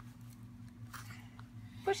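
Faint clicks and rustling of small plastic Shopkins toy figures being pressed down into a small plastic display case, over a low steady hum. A voice says "push" near the end.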